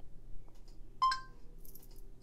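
A single short electronic beep from the M-Line smartwatch about a second in, one clear tone that fades quickly. It marks the end of voice dictation of a text message, just before the watch reads the message back.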